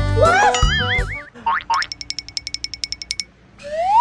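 Cartoon sound effects over background music: a wobbling boing tone in the first second, quick rising swoops, a rapid run of even ticks, then a steep rising whistle near the end as the music drops away.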